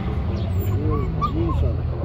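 Puppies whimpering: a run of short, high, rising-and-falling whines, over a steady low rumble.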